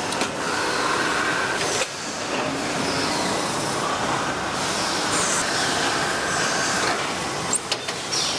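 Factory machinery running steadily on a metal-forming line, with a few sharp metallic knocks and brief high hisses.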